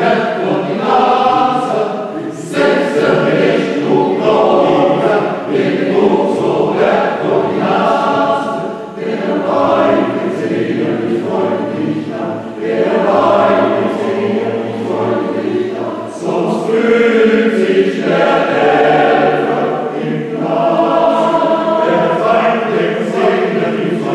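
A choir singing, in phrases with brief dips between them every few seconds.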